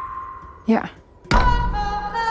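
A held high tone from the trailer score fades away. About two-thirds of the way in, a sudden deep impact hit sounds, followed by ringing tones.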